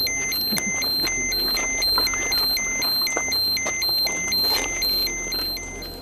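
Handheld radiation dosimeter sounding its alarm: a steady run of electronic beeps alternating between a higher and a lower pitch, about two a second. It signals a radiation reading far above the background, held over a hot spot on the ground.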